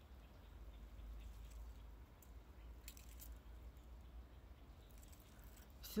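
Near silence: a faint low outdoor rumble with a few soft clicks.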